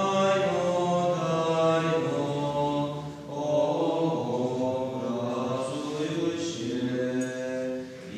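Byzantine-rite liturgical chant sung by a group of men's voices on long, held notes, with a short breath-break about three seconds in.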